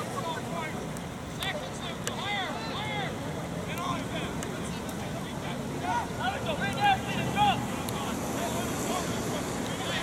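Distant shouts and calls from soccer players and coaches across the field, many short calls overlapping, over a steady background rumble. A couple of sharper, louder peaks come a little past the middle.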